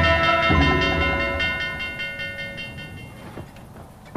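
Large bronze bell struck about half a second in, its many-toned ringing hanging on and fading away over about three seconds: the recall signal ordering a fighter to break off combat and retreat.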